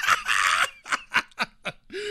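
A man laughing: a breathy burst of laughter, then a run of short, quick laugh pulses.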